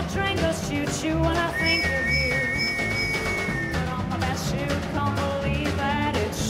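Small live jazz band playing an instrumental passage between sung lines: strummed ukulele and archtop electric guitar over a walking low bass line, with a long high note held through the middle.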